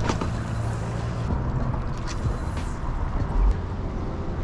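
Steady low rumble of road traffic on the bridge overhead, with a brief hiss of a passing vehicle about two seconds in. A sharp click at the start and a low thump about three and a half seconds in.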